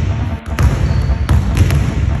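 A basketball bouncing on a hardwood gym floor, a few sharp bounces, over music with a heavy bass that starts just before.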